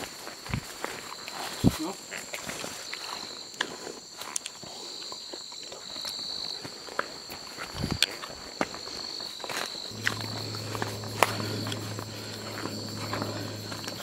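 Footsteps on a rocky, leaf-strewn forest trail, scattered scuffs and clicks, under a steady high-pitched night insect chorus. A low steady hum joins about ten seconds in.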